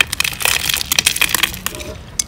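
Cashew nuts broken apart between the fingers, a quick run of small crisp cracks and crunches.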